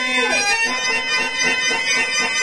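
A male voice singing a Telugu stage-drama verse (padyam) in a long, ornamented, wavering melodic line, amplified through the stage microphone. Under it runs a steady reedy drone of held chords, typical of the harmonium that accompanies drama padyalu.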